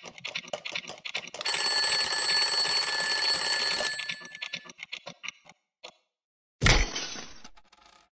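Sound effect of a mechanical twin-bell alarm clock: rapid ticking, then the bell ringing for about two and a half seconds, then ticking that dies away. Near the end comes a sudden crash as the clock breaks apart.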